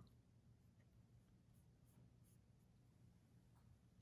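Near silence: a few faint soft strokes of a paintbrush on a decoy's wooden bill over a low room hum.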